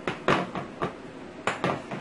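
A pitcher and a drinking glass knocking against a tiled kitchen counter as they are set down: about five sharp knocks and clinks, the loudest near the start.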